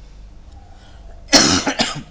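A person's short, breathy vocal burst in two quick pulses, about a second and a half in, like a cough or a laugh.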